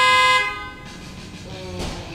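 A single loud horn blast: one steady, unwavering tone with a buzzy edge, held for under a second and cutting off about half a second in.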